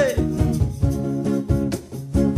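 Electric guitar strumming short, rhythmic chord strokes in a reggae groove between sung lines.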